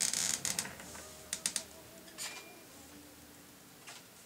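An electric guitar being handled and set down in a guitar stand: a cluster of knocks and rattles at the start, then a few sharp clicks about a second and a half in and one more a little later.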